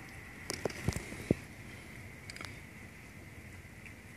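Steady rain falling on a wet street, with a few soft clicks and taps about a second in and again past two seconds.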